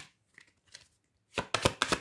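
A deck of oracle cards being shuffled by hand: a quick, dense run of crisp card clicks starting about a second and a half in.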